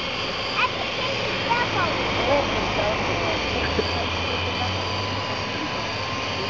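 A person laughing, with a few short vocal sounds, over a steady whirring noise; a low hum swells up through the middle and fades.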